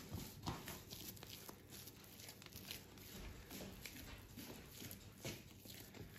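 Faint, irregular soft squishing and light knocks of pizza dough being kneaded by hand on a wooden board.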